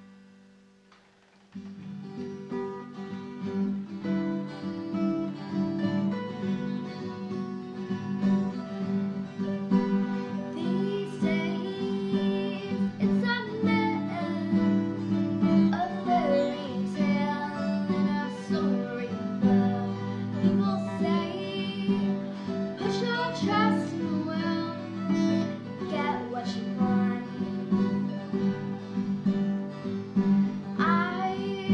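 Four acoustic guitars playing a song's opening. The strumming starts suddenly about a second and a half in, and girls' voices singing join about ten seconds in.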